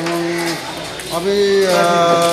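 A man's voice stretching out two long, steady vowels between words, in drawn-out hesitant speech.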